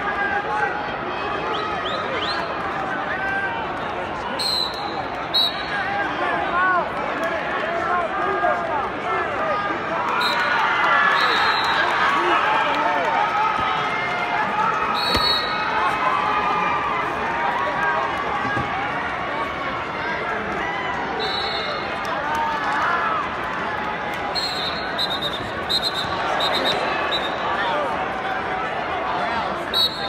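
Steady crowd din of many voices talking at once in a large arena hall during wrestling matches. Short, high whistle blasts sound several times, a little louder for a few seconds in the middle.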